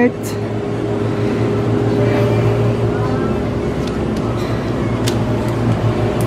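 Steady low hum of an open-front refrigerated display case in a convenience store, with a few faint clicks.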